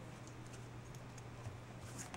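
Faint handling of nylon paracord by hand, a few soft ticks and rustles as the cord is moved through the weave, over a steady low hum.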